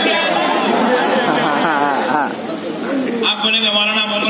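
Men's voices talking over one another through microphones, with one voice wavering up and down in pitch about one and a half seconds in.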